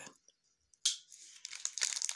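Clear plastic bead packets crinkling as they are handled, starting with a sudden rustle about a second in after a near-silent start, then faint crackling.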